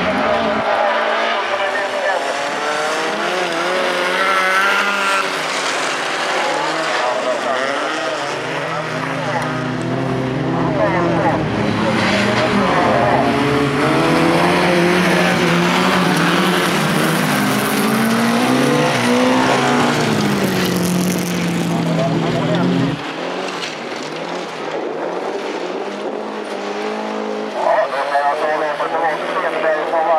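Folkrace cars racing on a loose gravel track, their engines revving hard and the engine note rising and falling as they accelerate and lift through the corners. The engine sound is loudest through the middle and drops away sharply about two-thirds of the way in.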